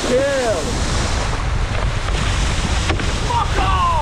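Wind buffeting the microphone over the rush of water spray from a wakeboard carving behind a cable tow. Short calls that rise and fall in pitch come in the first half-second and again near the end.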